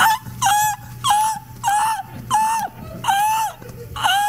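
A rapid run of short, high, dog-like whimpering cries, about two a second. Each one rises and then falls in pitch.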